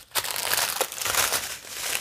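Clear plastic bags of diamond painting drills crinkling and rustling as they are handled and gathered up, with many small irregular crackles.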